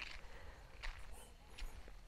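Faint footsteps on a dirt track, about three steps.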